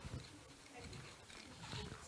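Quiet room tone in a meeting room, with faint, indistinct voices and a few small ticks.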